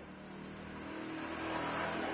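A steady motor hum with several pitched tones, slowly growing louder.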